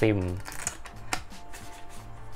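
Cardboard and paper packaging of a phone box handled: light clicks and taps as a charging cable is drawn out of the box's cardboard insert, with one sharp tap a little past a second in.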